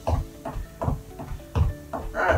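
Background music with held notes, over a soft low thud about every three-quarters of a second.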